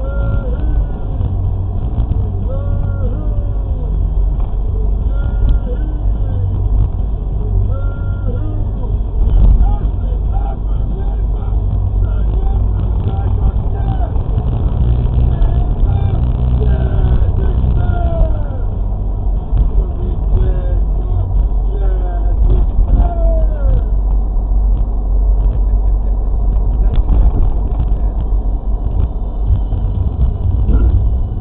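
Heavy, steady low rumble of wind and road noise from a vehicle driving on a road and picking up speed.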